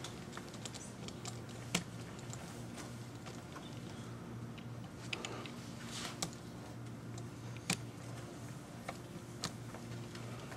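Quiet room tone during a timed silence: a steady low hum with scattered faint clicks and small rustles. The sharpest click comes about two seconds in and another just before eight seconds.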